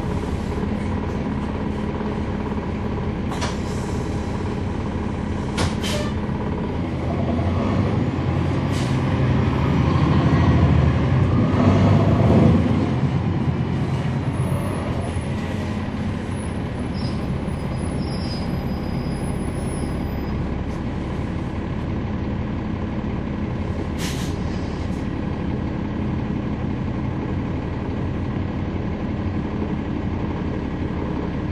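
Heard on board a 2011 NABI 40-SFW transit bus: its Cummins ISL9 inline-six diesel and ZF Ecolife six-speed automatic transmission running with steady road noise. The drive noise swells louder for several seconds from about seven to thirteen seconds in, then settles back to a steady run, with a few short sharp clicks or rattles along the way.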